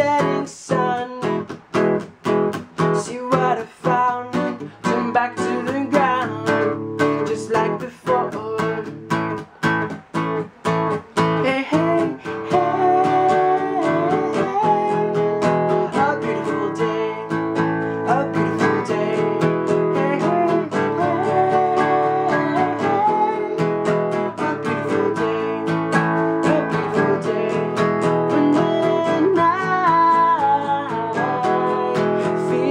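Acoustic guitar strummed in short, choppy strokes with brief gaps for about the first twelve seconds, then strummed fuller and steadier while a man sings along.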